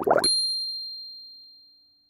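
A single bright, high electronic ding, a logo-sting chime, struck just after the start and ringing out, fading away over about two seconds.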